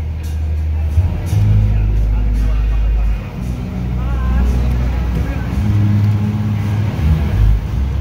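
Festival stage sound system heard from a distance during a soundcheck: mostly deep bass notes, each held for a second or so before stepping to the next, with a wavering voice about four seconds in.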